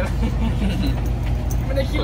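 Steady low rumble of a coach bus's engine and road noise heard inside the passenger cabin, with a man's voice coming in near the end.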